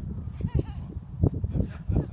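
Wind rumbling and thumping on the microphone, with a short high-pitched gliding call about half a second in.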